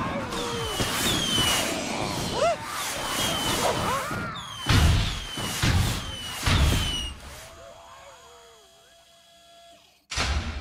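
Cartoon fireworks: a rapid string of short falling whistles, with three heavy bangs about five to seven seconds in. The sound then dies away to a faint held tone.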